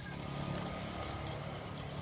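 A motor running nearby with a steady low hum.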